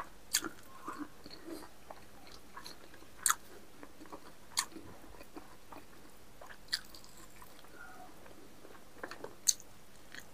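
Close-up sound of a man eating by hand: chewing, with about five sharp mouth clicks and smacks spread a second or more apart and softer ticks in between.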